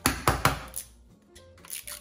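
Small plastic toy egg being cracked open by hand: a quick cluster of sharp plastic clicks and cracks in the first half second, then quieter handling, under background music.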